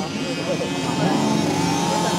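Several dirt-track race motorcycles running together, their engine note rising slightly about halfway through as the pack comes round the turn, with voices talking over them.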